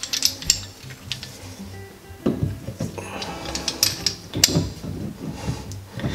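Short metallic clicks and rattles from an old adjustable wrench being handled and its jaw worked open, then closed onto a sink drain's metal nut, with music in the background.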